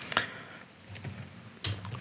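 Typing on a computer keyboard: a handful of separate keystrokes, a couple near the start, one about a second in and a quick cluster near the end.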